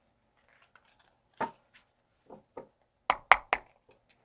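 Tarot deck being shuffled by hand: scattered light clicks of cards, then three sharp taps close together near the end.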